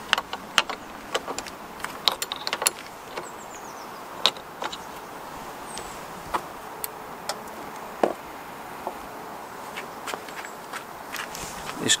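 Irregular metallic clicks and taps of a 13 mm wrench on a car battery's terminal clamp as the battery is disconnected.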